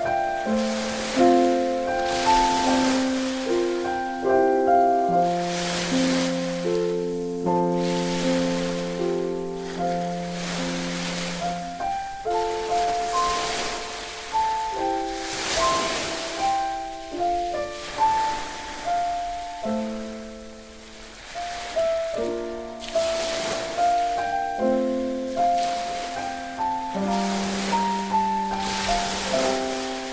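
Solo piano playing a slow, gentle melody. Underneath, a bed of ocean waves surges and recedes every few seconds.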